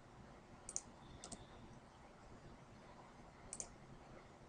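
Faint computer mouse clicks over near-silent room tone: a quick double click about three-quarters of a second in, a lighter click soon after, and another double click near the end.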